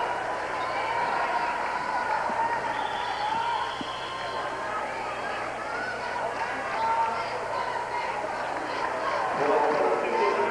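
Volleyball gym crowd: many overlapping voices chattering and calling out between points, a steady hubbub with no single voice standing out.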